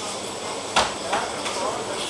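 Faint voices with a sharp knock a little under a second in, then a lighter knock.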